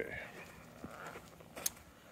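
Quiet outdoor ambience with a couple of faint, short clicks.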